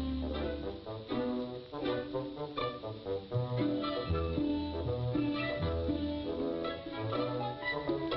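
Orchestral cartoon film score with brass, over a low bass line that steps from note to note about once a second.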